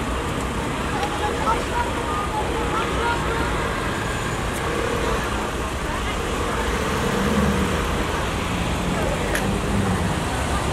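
Steady road traffic noise at a busy intersection, with the indistinct voices of people standing about.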